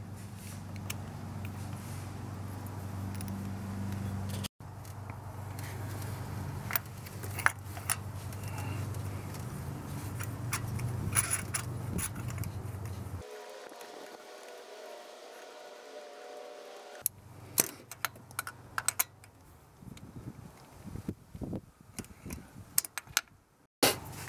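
Scattered metal clicks and clinks of a swivel spark-plug socket and wrench as a new spark plug is seated in the socket and tightened into the cylinder head. A steady low hum runs underneath and breaks off abruptly at several points.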